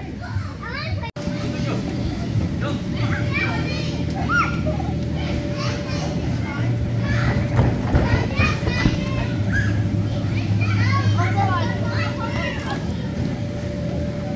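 Many children shouting and calling out as they play in a large gym hall, over a steady low hum. The sound cuts out for an instant about a second in.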